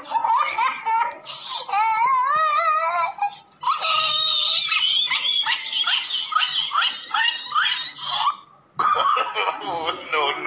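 Loud laughter, wavering up and down in pitch, with a short break near the end.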